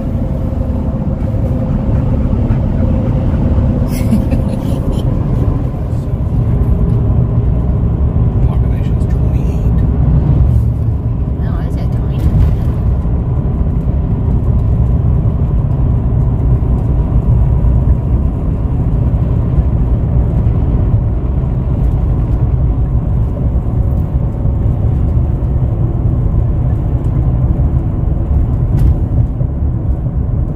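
Steady low road and engine rumble heard inside a pickup truck's cab while it drives along a highway, with a few faint clicks in the first half.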